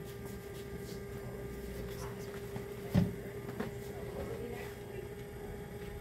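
Electric potter's wheel running with a steady hum while it spins a clay bowl, with a single sharp knock about halfway through.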